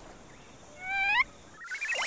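A short pitched cartoon cat mew about a second in, rising at its end. Near the end comes a rising whoosh sound effect for a scene transition.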